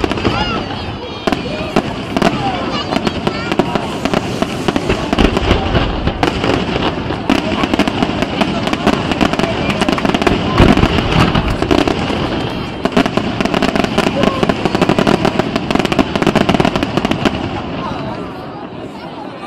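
Aerial fireworks display: shell bursts with rapid crackling, coming thick and fast and densest in the second half, dying down at the very end.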